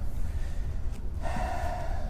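A man's short breathy vocal sound, like a gasp, lasting under a second near the end, over a steady low hum.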